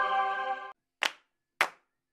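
A held musical chord cuts off under a second in, followed by two short, sharp claps about half a second apart, evenly spaced like a count-in.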